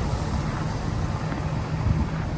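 Hummer H2's V8 engine idling steadily.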